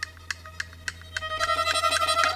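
Violin music: short, sharp plucked notes about three a second, then a little over a second in, louder held notes come in over them.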